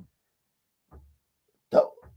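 A pause with a faint click about a second in, then near the end a man's short, sharp vocal gasp.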